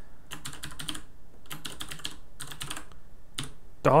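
Typing on a computer keyboard: several short runs of quick keystrokes with brief pauses between them.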